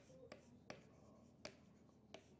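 Chalk writing on a chalkboard, heard as a few faint, irregular sharp taps of the chalk against the board.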